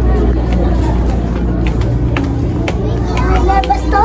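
Indistinct voices over a steady low rumble, with a child's high voice speaking near the end.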